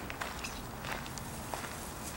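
Footsteps on a gravel path: a few irregular steps over a steady low background noise.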